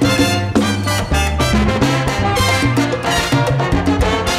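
Salsa band playing an instrumental passage, with brass over a driving bass line and percussion.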